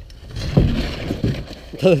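Bicycle dropping off a snow-covered ramp. Its tyres rush over the snow for under a second, starting about half a second in.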